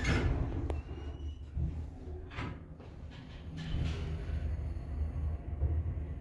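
Dover elevator, modernized by Sterling, setting off and travelling up: a steady low hum of the moving car, with a sharp click less than a second in and a faint rising whine just after it.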